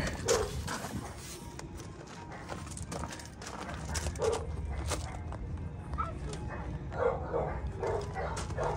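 A dog barking faintly a few times, over a steady low background rumble.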